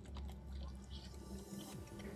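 Faint biting and chewing of a stuffed quesadilla taco filled with crispy fried jumbo shrimp, with soft scattered crunches.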